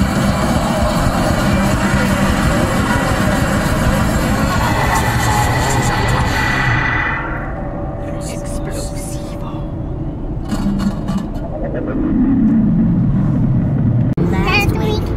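A rock song with vocals plays on the car stereo, then stops about halfway through. The steady low rumble of road noise inside the moving car remains, with a few short sounds over it.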